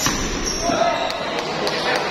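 Celluloid-type plastic table tennis ball clicking off paddles and the table in a doubles rally, several sharp clicks, more closely spaced in the second half, over a steady hubbub of voices in a large hall.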